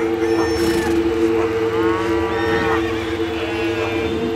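Logo sound effect: farm animal calls over a steady, loud low hum.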